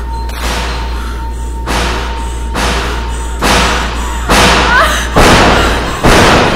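A run of heavy thuds, roughly one a second, each louder than the last, over a low steady drone, building in intensity like a dramatic score cue.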